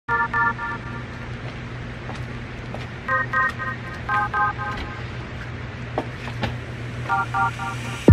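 Short electronic chord beeps in four quick groups of three or four, the opening notes of a song, over a steady low hum and background noise. A few sharp clicks come about six seconds in.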